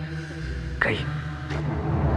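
Film soundtrack: a chanted Sanskrit verse over held music ends about half a second in. A short rising sweep follows near the one-second mark, a fainter one comes just after, and a low rumble builds.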